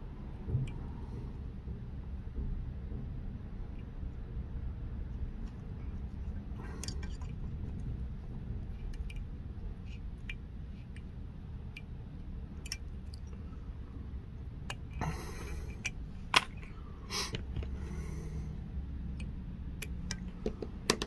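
Faint handling noises from tying a fly at the vise, as thread and materials are worked by hand over a steady low hum. A few sharp clicks come near the end.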